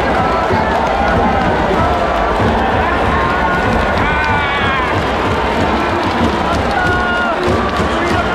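Baseball stadium crowd cheering in the stands, a dense steady din with nearby fans' shouts and voices on top. One loud call rises and falls about four seconds in.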